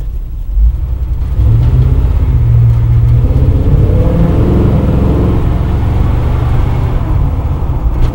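Big-block V8 of a 1971 Chevy pickup pulling the truck up the street, heard from inside the cab: a deep rumble that builds about a second and a half in as the engine takes load, then eases back a little near the end.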